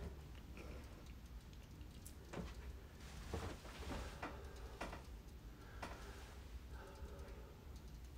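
Faint, soft footsteps on a hard wood-look plank floor, a light tick every half second to a second, over low room tone in an empty house.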